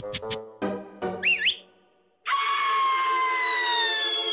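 Cartoon soundtrack music and sound effects: short musical notes, a warbling whistle-like glide about a second in, a brief drop to near silence, then a loud sustained chord whose tones slowly fall in pitch.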